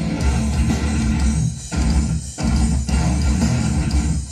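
Loud, heavy metalcore music with distorted guitar and bass, the riff stopping short three times for brief stop-start breaks.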